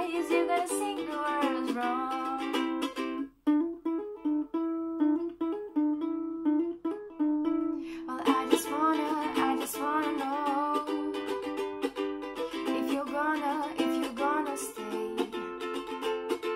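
Ukulele strummed in steady chords with a woman singing over it. The singing pauses about three seconds in, leaving the ukulele alone for a few seconds, and resumes about eight seconds in.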